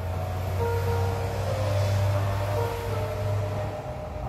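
Digital piano played in slow, held notes, under the louder rushing noise of a passing vehicle that swells to a peak about halfway through and then fades.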